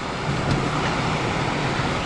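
Steady road noise inside a moving Toyota RAV4's cabin: tyres running on wet tarmac with a low, even hum underneath.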